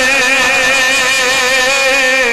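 A man's voice singing a naat through a microphone, holding one long note with a slow waver.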